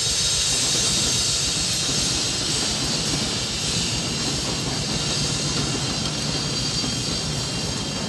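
Several drum kits played together in a fast, continuous roll, the drums rumbling under a sustained wash of cymbals, easing off slightly near the end.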